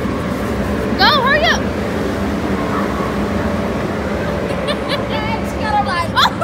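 Steady background din with a low hum in a large busy indoor hall, with high-pitched children's shouts and squeals about a second in and again near the end.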